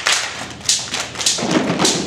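Children clapping and beating hand drums in rhythm between sung lines: a few sharp claps and a heavier, deeper drum thump in the second half.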